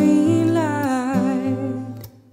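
Music: a woman singing a slow, downward-sliding phrase with vibrato, accompanied by plucked acoustic guitar.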